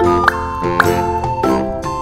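Cheerful children's background music with steady melody notes and little upward-swooping accents.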